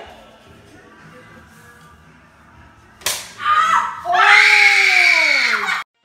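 A sharp smack about three seconds in, then a loud scream that slides steadily down in pitch for nearly two seconds and cuts off abruptly.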